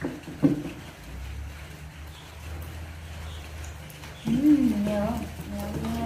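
A sharp knock about half a second in, then a steady low hum. From about four seconds in a voice makes a few drawn-out sounds, rising and falling, then held.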